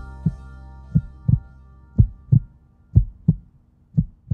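Heartbeat sound effect of a logo sting: low double thumps, lub-dub, about once a second, over the last fading chord of background music.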